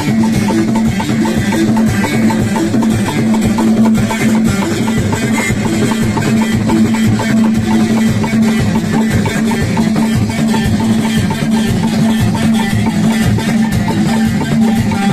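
Live Moroccan chaabi music: hand drums, a frame drum with jingles and a clay goblet drum, beat a steady, fast rhythm over a held low note.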